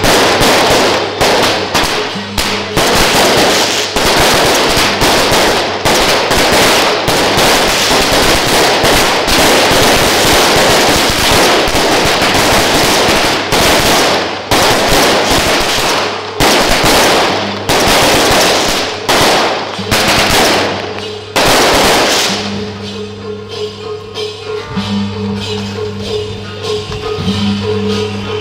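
A long, rapid run of firecrackers cracking continuously, set off in small boxes on the road. It stops about 22 seconds in, and procession music with tambourine comes through afterwards.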